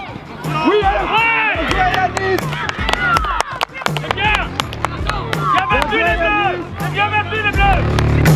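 Young voices shouting at a goal, over background music with a steady beat.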